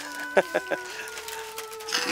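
A chicken clucking a few short times, close together, about half a second in, over a faint steady hum.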